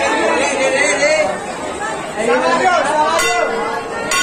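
A crowd chattering, with a hanging brass temple bell struck once a little after three seconds in and ringing on.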